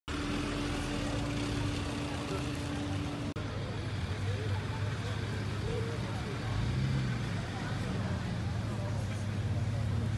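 Street noise: a vehicle engine running steadily, with people talking indistinctly in the background. The sound breaks off sharply a little over three seconds in, then goes on as before.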